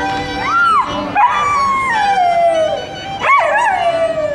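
Golden retriever howling along to a violin: three howls, each rising and then sliding down in pitch, the longest starting about a second in, over sustained violin notes.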